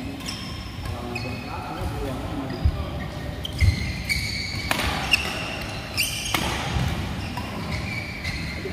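Badminton rally in an echoing hall: sharp racket strikes on the shuttlecock, thuds of feet landing on the court mat with two heavy thuds a second apart in the first half, and short high shoe squeaks, over background voices.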